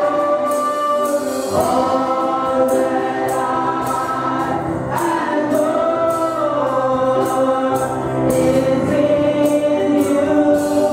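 Gospel singing through a church PA: a woman leading into a microphone with a chorus of voices, over a steady percussion beat.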